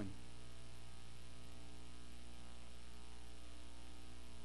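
Steady electrical mains hum, a low buzz that runs unchanged with nothing else heard over it.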